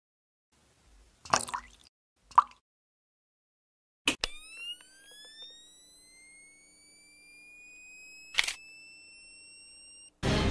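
Photo flash sound effect: a sharp click, then a high whine that climbs slowly in pitch as the flash charges, and a sharp pop of the flash firing about eight seconds in. Before it come two short knocks, about one and two seconds in.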